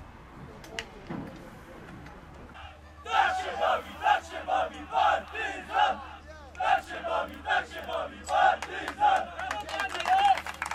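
A football team's players chanting together in a victory huddle: loud rhythmic group shouts about twice a second, starting about three seconds in.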